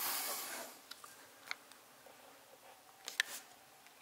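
Camera handling noise: a brief rustle, then a few faint, sharp clicks, the loudest near the end, as the camera struggles to zoom in close.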